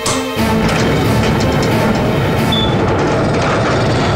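A wall switch clicks, then a hidden door's mechanism rumbles continuously and loudly, under tense background music.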